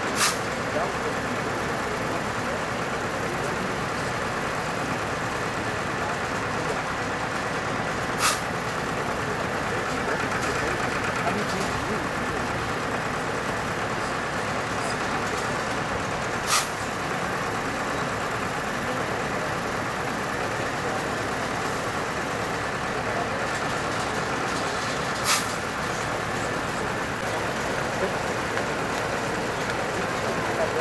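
Heavy diesel truck and transport equipment running steadily, with voices in the background. Four sharp clicks come about eight seconds apart.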